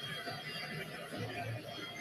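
Faint murmur of voices with a soft chuckle, under a radio sports broadcast.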